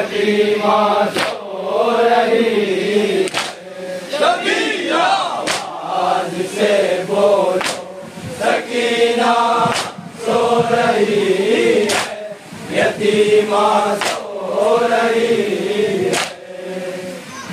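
A group of men chanting an Urdu nauha (Shia lament) together through microphones. Sharp, rhythmic slaps of chest-beating (matam) mark the beat about every two seconds.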